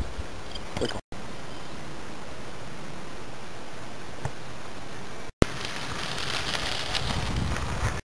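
Wind noise on a camcorder microphone, a steady rushing hiss broken twice by brief silences at edits. It is brighter in the last few seconds, when the camera is on a moving bicycle.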